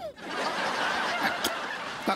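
Sitcom laugh track: a crowd of people laughing, swelling just after the start and then slowly dying away.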